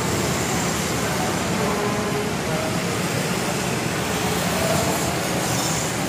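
Steady street traffic noise: cars and motorbikes running along a busy town road, an even rush with a faint engine hum under it.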